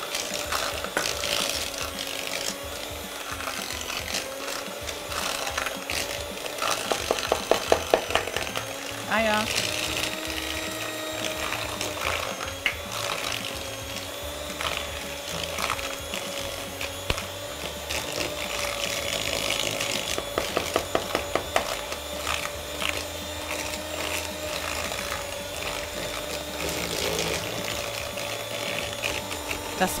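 Electric hand mixer running steadily, its beaters creaming soft butter with sugar in a plastic bowl; the motor hum wavers slightly in pitch. Bursts of rapid clicking come about seven seconds in and again around twenty seconds.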